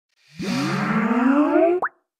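Skype logo intro sound: a short electronic jingle of several tones gliding slowly upward together. It opens with a quick upward swoop, ends in a fast rising pop, and cuts off suddenly.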